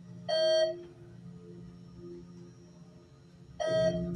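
Elevator chime beeping twice, about three seconds apart, each a short bright tone, over a steady low hum as the cab rides up the shaft.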